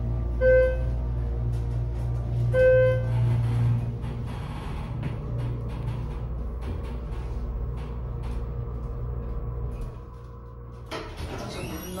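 Schindler HT hydraulic elevator's pump motor running with a steady low hum while the car rises, with two short electronic chime tones in the first three seconds. The hum stops about ten seconds in, and a clatter follows near the end as the car comes to a stop.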